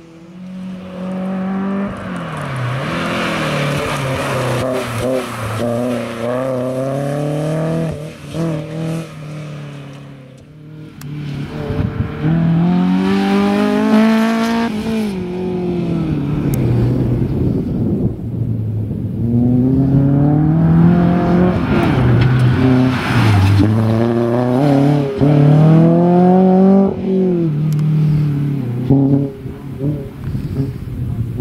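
Toyota MR2 race car's engine revving hard as it drives past. Its pitch wavers through a corner, then climbs and drops back sharply several times, as at gear changes. The sound dips briefly about ten seconds in.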